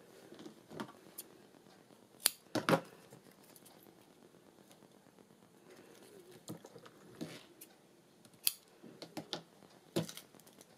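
Double-sided craft tape pulled off its roll and snipped with scissors while a paper oval is handled on a wooden table: a string of short, sharp snips, crackles and clicks, loudest about two to three seconds in and again near the end.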